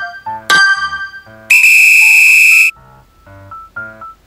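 Countdown timer sound effect: a bright chime about half a second in, then a loud, steady high buzzer tone held for about a second as the countdown ends, over light keyboard background music.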